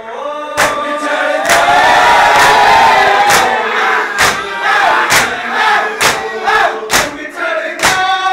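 Shia mourners doing matam: bare-chested men striking their chests with open palms in unison, one sharp slap about every second. Over it a crowd of men chants a nauha lament together, loudest in the first half.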